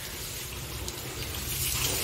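Water jet from a motor-pump hose spraying onto the metal bodywork of a tracked combine harvester while it is washed down, a steady rushing hiss that grows a little louder near the end, over a low steady hum.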